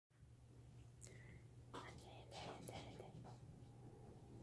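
Faint whispering from a person, in short breathy bursts during the middle of the clip, over a low steady hum.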